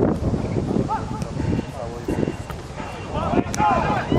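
Short calls and shouts of voices on an outdoor football pitch, too far off to make out, with a burst of several calls near the end; wind rumbles on the microphone throughout.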